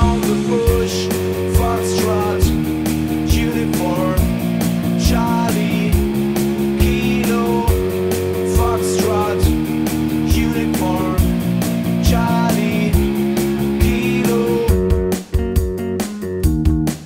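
Rock band backing track with drums keeping a steady beat, guitar chords and an electric bass played along with it. The band briefly breaks near the end.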